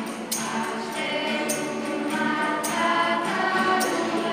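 Mixed vocal group singing a Christmas carol (colindă) in a church, with acoustic guitars and a bright, sharp percussion stroke about once a second.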